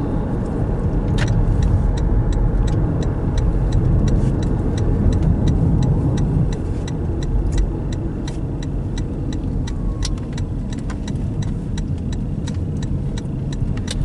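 Inside a moving car: steady engine and road rumble. From about two seconds in comes an even clicking, about three clicks a second, as from the turn signal while the car moves into a turn lane and turns.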